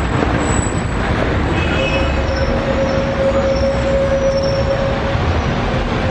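Street traffic noise on a city sidewalk, with a steady high squeal that holds for about three seconds in the middle.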